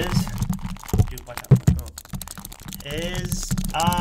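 1985 He-Man plastic action figures being handled and knocked together right at the microphone: a run of quick plastic clicks and taps, with dull thumps of the figures bumping the mic about a second in and again half a second later.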